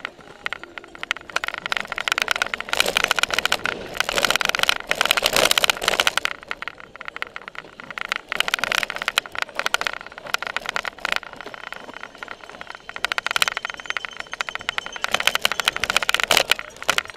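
Cyclocross bike with a seat-mounted camera, ridden hard over bumpy grass and dirt: a dense, continuous rattle and clatter from the bike and camera mount, with tyre and drivetrain noise. It gets louder in several stretches as the ground gets rougher.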